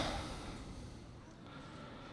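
Low room tone with a faint steady hum. It follows a short breath-like rush of noise that fades within the first half-second.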